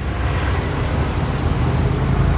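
Road traffic passing beyond the lot: a steady rumble with hiss that swells slightly, from vehicles including a motorcycle.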